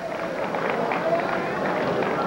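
Arena crowd noise: a steady din of crowd chatter and scattered applause.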